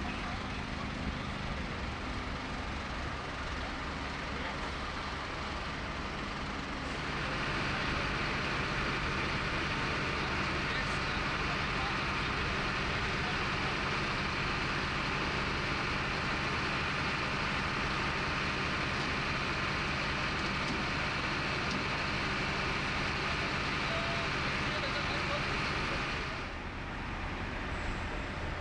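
Idling diesel engines of heavy fire-service vehicles: a steady low hum under a constant hiss. The sound shifts about seven seconds in, becoming louder and brighter, and drops back shortly before the end.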